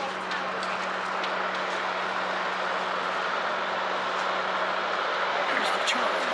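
A steady mechanical drone with a constant low hum, with faint voices in the background.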